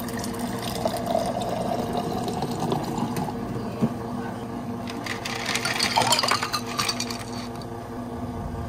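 Water running into a tall glass, its pitch rising as the glass fills, then ice cubes clattering into the glass about five seconds in. A steady machine hum runs underneath.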